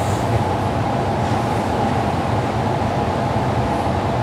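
Steady hum and hiss of a room fan running, with no change throughout.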